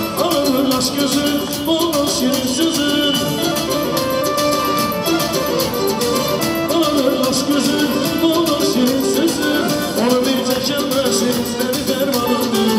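Live dance music from a wedding band, played on an electronic keyboard: a wavering melody over a fast, steady drum beat.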